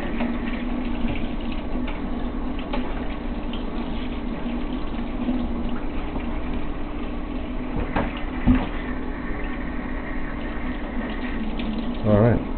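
Kitchen faucet running steadily, water splashing over a cleaned crab held under the stream in a stainless-steel sink. A couple of short knocks about eight seconds in.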